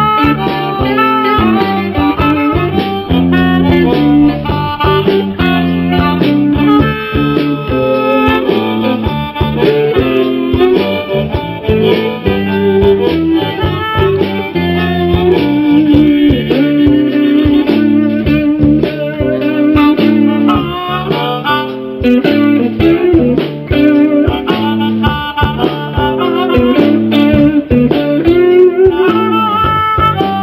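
Live blues band: an amplified blues harmonica played into a vocal microphone takes a solo with held, bending notes over electric guitars and a drum kit keeping a steady shuffle.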